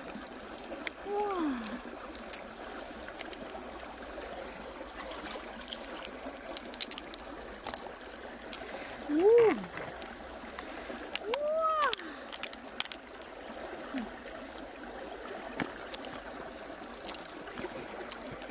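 Steady running-water noise, with small wet clicks and squelches as fingers work pearls out of a freshwater pearl mussel's flesh. Three short exclamations that rise and fall in pitch come about a second in, about nine seconds in and about eleven and a half seconds in.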